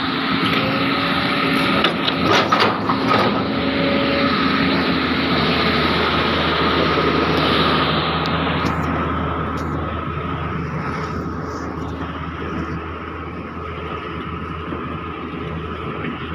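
Heavy construction machinery, such as an excavator's diesel engine, running steadily with a low hum and a thin steady whine. A few sharp knocks come about two to three seconds in, and the noise eases a little after the halfway point.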